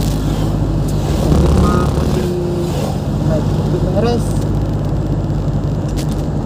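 Moving vehicle's engine and road noise heard from on board: a steady low drone at cruising speed.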